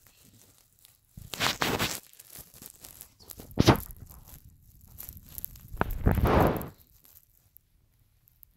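Fabric rustling and handling noise close to the phone's microphone, as a blanket and clothing are shifted, in three short bursts about a second and a half, three and a half and six seconds in.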